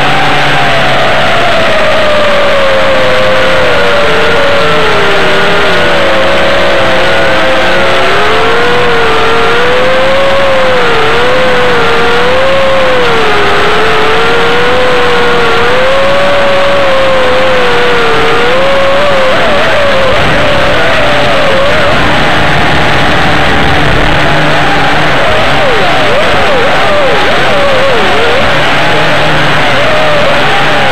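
WLtoys V262 quadcopter's motors and propellers whirring loudly, picked up by its onboard spy camera's microphone. The pitch wanders up and down with the throttle, then swings up and down quickly from about two-thirds of the way through.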